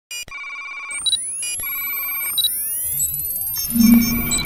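Electronic sci-fi interface sound effects: repeated clusters of computer-like beeps with short high blips, overlaid by rising synthetic sweeps, and a low hum swelling in near the end.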